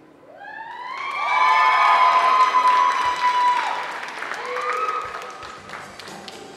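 Audience applauding and cheering: clapping swells in about half a second in, with several long, high-pitched screams and whoops over it that fade after a few seconds, and a further shout a little before the end.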